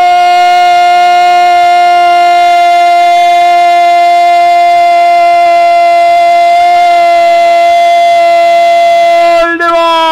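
Radio football commentator's long goal cry ('¡Gooool!'), one loud note held steady for about nine and a half seconds, falling in pitch as his breath runs out near the end.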